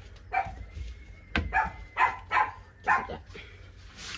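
A dog barking in the background: a string of about six short barks.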